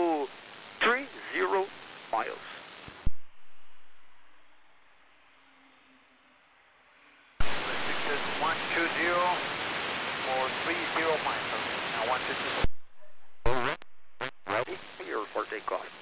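Air traffic control radio chatter: a transmission ends with a sharp squelch click and about four seconds of near silence. Then a voice comes through heavy static hiss, the hiss cuts off, a few short clicks of keyed transmitters follow, and another voice starts near the end.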